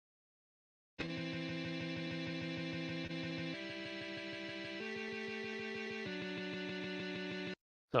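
Guitar Pro software playback of layered distorted electric guitar harmony parts: four held chords, changing about every second and a half, starting about a second in and stopping shortly before the end. It has the thin, typical Guitar Pro sound of the program's built-in instruments.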